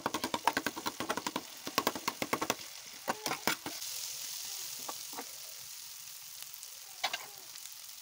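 A metal spoon scrapes and knocks against an aluminium pan as fried bitter gourd and tomato-onion masala are stirred together in sizzling oil. The quick clatter of the spoon gives way after about three and a half seconds to a steady sizzle, with a couple more knocks near the end.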